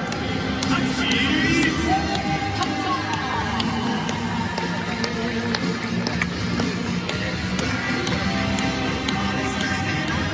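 A batter's walk-up song played over a baseball stadium's PA system, with a steady beat.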